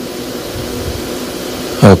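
Steady background hiss in a pause between spoken phrases, ended by a man saying "Ok" near the end.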